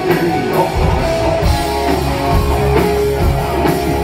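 A gothic rock band playing live through a club PA: electric guitars, bass and drum kit at a loud, steady level, heard from the audience.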